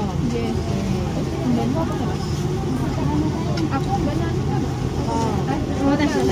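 Crowded eatery chatter: several people talking at once in the background, no single voice standing out, over a steady low hum.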